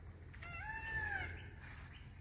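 A single faint animal call: one drawn-out pitched note, under a second long, that rises slightly and then falls away.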